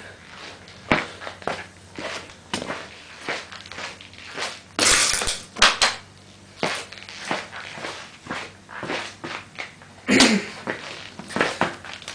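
Footsteps and handling noise on a concrete garage floor: scattered knocks and clicks with rustling, including a louder rustling burst about five seconds in and another near the end. The vacuum motor is not running.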